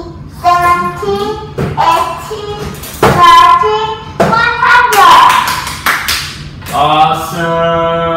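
Voices chanting the count by tens in a sing-song rhythm, one pitched syllable after another, with a loud breathy sound about five seconds in and a long held note near the end.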